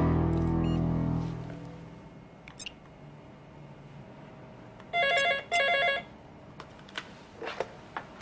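Office desk telephone ringing: one electronic double ring, two short trilling bursts about half a second each, near the middle. Background music fades out in the first second and a half.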